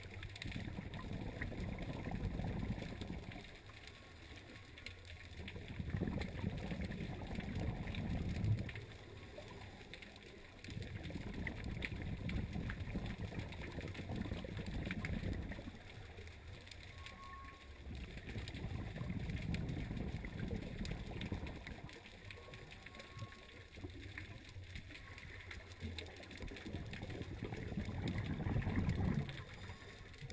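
Scuba regulator breathing heard underwater: about five rumbling bursts of exhaled bubbles, each two to four seconds long, with quieter pauses for inhaling between them.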